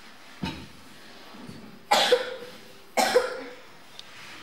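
A man coughing twice into a handheld microphone, heard through the PA, the two coughs about a second apart. A softer thump comes about half a second in.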